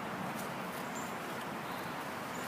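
Steady outdoor background hiss, with one faint, short, high chirp about halfway through.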